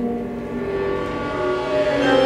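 Sustained instrumental drone: several steady tones held together as one chord, with a few of them shifting near the end.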